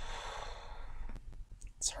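A person sighing: one soft, breathy exhale lasting about a second and fading out, with the start of a spoken word near the end.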